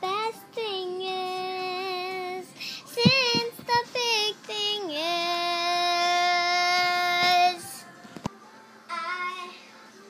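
A young girl singing, drawing out long held notes; the longest is held steady from about five seconds in for two and a half seconds. A few short thumps sound about three seconds in.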